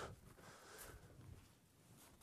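Near silence: faint outdoor room tone in a pause between speech.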